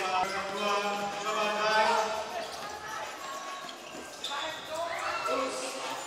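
Basketball bouncing on a hardwood court during play, with voices of players and spectators calling out in the gym.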